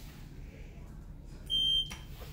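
Elevator button panel giving one short, steady electronic beep as a floor button is pressed, about one and a half seconds in.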